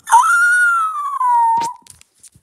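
A dog giving one long, high whine that rises sharply at first and then slides slowly down in pitch. A short knock comes near the end.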